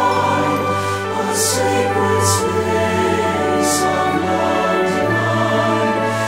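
Mixed SATB church choir singing held notes of a slow sacred anthem over instrumental accompaniment with a steady bass line.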